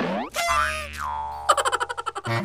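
Cartoon-style comedy sound effect: a springy boing that sweeps up in pitch and then slides back down, followed near the end by a fast stuttering rattle of short repeated pulses.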